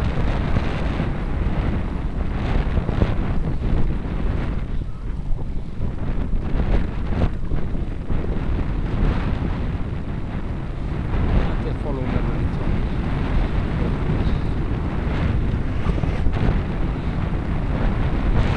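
Wind buffeting the microphone of a camera on a moving bicycle: a steady low rumbling noise with brief louder gusts throughout.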